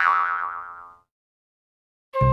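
An edited-in comic sound effect on a title card: a pitched tone that swoops up at the start, then rings and dies away, gone about a second in.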